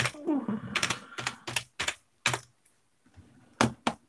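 Computer keyboard being typed on: irregular key strikes for the first couple of seconds, a short pause, then two more strikes near the end. A brief murmured voice sounds under the first second of typing.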